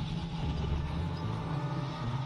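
Steady low rumble of vehicle engines, with no speech over it.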